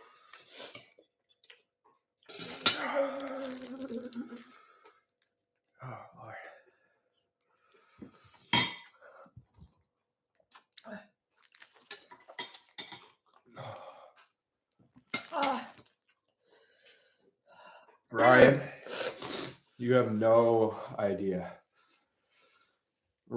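Metal spoons and forks clinking and scraping against ceramic bowls and plates as food is served and eaten, with one sharp clink a little before the middle. Voices and breathy reactions come in near the end.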